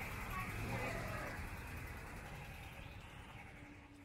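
Outdoor amusement-park ambience: faint voices of people nearby over a low rumble, fading out steadily.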